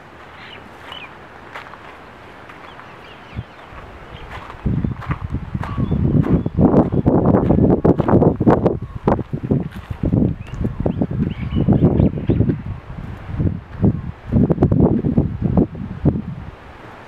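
Wind buffeting the camera's microphone. It sets in about five seconds in as loud, irregular rumbling gusts.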